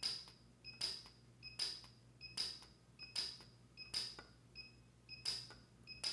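PUK U5 micro TIG welder firing in rapid-fire mode, pulsing its arc onto wire-fed filler on steel. Each pulse is a short high tone with a sharp crackling snap, repeating evenly a little more than once a second.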